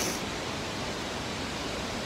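Steady rushing background noise, even throughout, with no distinct sounds in it.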